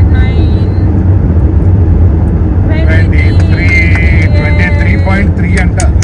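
Steady low rumble of road and tyre noise inside a moving car's cabin, with a voice talking over it from about three seconds in.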